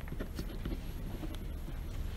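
Irregular light taps and knocks over a low steady hum.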